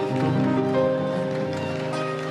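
Live Arabic orchestra playing the instrumental introduction to a song, with long held notes from the ensemble.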